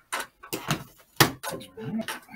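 A laptop being set down and handled on a desk: a series of short knocks and clicks, the loudest a little over a second in.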